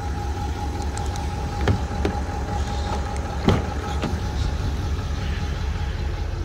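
A few short clicks and knocks, the strongest about three and a half seconds in, as the pickup's rear cab door is opened. They sit over a steady low rumble and a faint steady hum.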